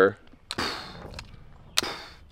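Two sharp bangs about a second and a quarter apart, each followed by a short fading echo.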